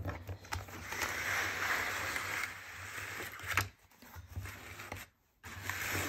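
A pen case holding fountain pens and a spiral notebook being slid and turned on a cutting mat: a scraping rub for a couple of seconds, a sharp knock about three and a half seconds in, then more rubbing near the end.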